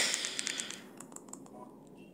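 A short rustling burst, then a quick run of light clicks and taps that fade out near the end.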